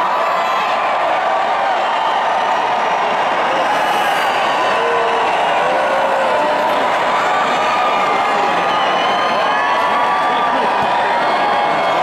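Large arena crowd cheering and whooping steadily, many individual voices shouting over a continuous roar.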